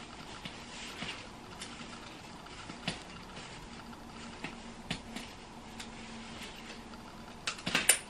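Plastic frame and locking slider of a portable baby bassinet being worked by hand: scattered light clicks and creaks, with a quick run of louder clicks near the end as the lock is set.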